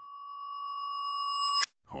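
A single steady high tone with faint overtones, played in reverse: it swells gradually for about a second and a half, then cuts off abruptly.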